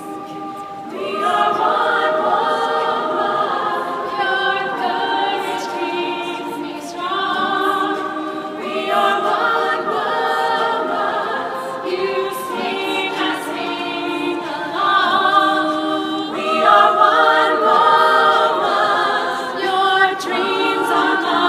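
An unaccompanied women's a cappella choir singing in harmony. The voices swell about a second in and carry on in held chords, phrase after phrase.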